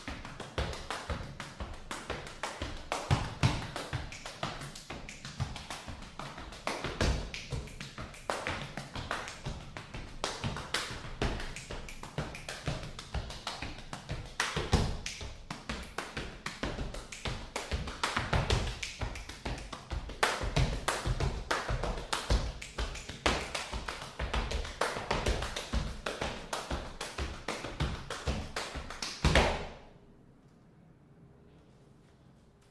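Body percussion: a fast, dense rhythm of sharp taps and slaps with deeper stomping thuds underneath, stopping abruptly near the end.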